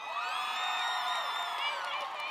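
Girls' voices from a cheerleading squad shouting a cheer together, one drawn-out high-pitched yell held for nearly two seconds, with a crowd cheering behind.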